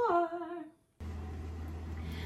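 A woman's voice gives a short hummed note that rises and then falls, ending before the first second. After a brief dropout, a steady low electrical hum with faint hiss starts abruptly and carries on.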